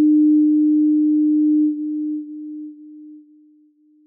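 A single steady, pure electronic tone sounding as the closing station ident. It is loud at first and then fades away in steps over about four seconds.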